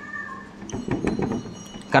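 Whiteboard marker squeaking and scratching across a whiteboard as a sentence is written: a thin squeal at first, then a quick run of short strokes with high squeaks.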